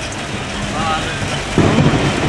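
Heavy rain on the vehicle's roof and windshield with engine and road noise, heard inside the cabin of an Isuzu Crosswind. A sudden louder low rumble comes in about a second and a half in.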